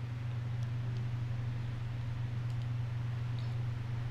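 Steady low hum of a desktop gaming PC running at idle, its fans and liquid-cooler pumps spinning, with a few faint ticks over it.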